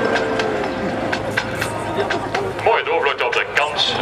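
Twin turboprop airliner with two Pratt & Whitney PT6A engines passing overhead: a steady propeller drone with a tone that dips slightly in pitch early on. A man's voice comes in near the end.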